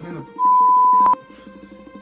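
A single loud, steady, high-pitched beep, lasting under a second with an abrupt start and stop, of the kind edited in as a bleep sound effect. Quiet background music plays under it.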